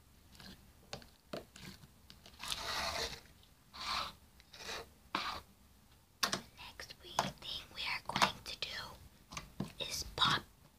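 Hands squishing and kneading a lump of slime: sticky crackles, squelches and pops. They come sparsely at first, then quicker and louder over the last few seconds.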